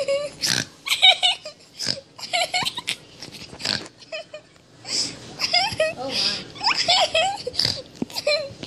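A child's excited squeals and giggling in short, high-pitched bursts, with no clear words.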